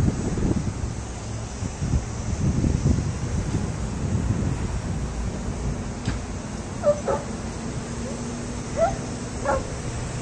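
Low outdoor rumble, then, from about seven seconds in, a handful of short, high yelping animal calls.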